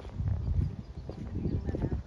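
Footsteps of a person walking on a paved path, heard as irregular low thuds with a rumble of handling noise on a handheld microphone.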